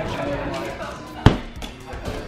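A large inflatable exercise ball gives a single sharp thump about a second in, over background music.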